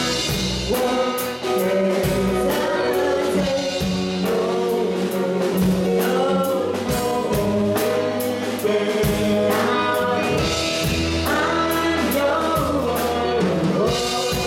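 Live rock band: a woman singing into a microphone over electric guitar, bass guitar and a drum kit keeping a steady beat.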